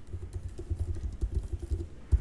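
Typing on a computer keyboard: a quick, even run of about a dozen keystrokes.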